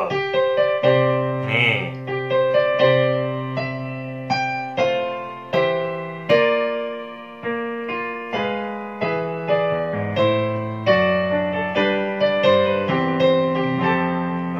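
Keyboard piano played with both hands: a slow chord progression of sustained chords with melody notes on top, built on suspended (sus2 and sus4) chords, with a new chord or note struck about every half second to a second.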